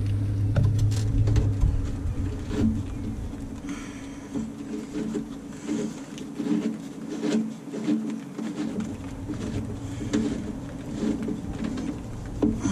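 Small irregular clicks, taps and scrapes of metal as hands work a loosened power steering hose fitting on a bus's steering gearbox.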